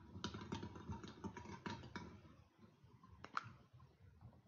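Draw balls clicking against each other and against a glass bowl as a hand stirs them: a quick, irregular run of light clicks, then one sharper click near the end.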